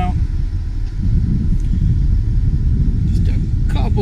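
A loud, fluttering low rumble of wind buffeting the microphone outdoors.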